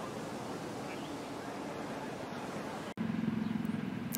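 Outdoor golf-course background with spectators: an even, wordless hiss of crowd and open air. About three seconds in it cuts off abruptly and gives way to a steady low hum.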